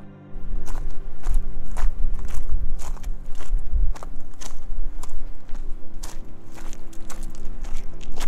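A hiker's footsteps walking steadily, about two steps a second, over background music with long held tones.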